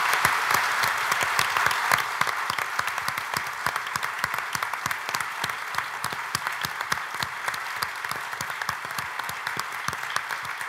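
Large audience in a lecture hall applauding steadily, loudest in the first couple of seconds, then easing slightly.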